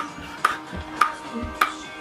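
Ping pong ball bounced repeatedly on a table-tennis paddle, a sharp tap a little under twice a second in an even rhythm.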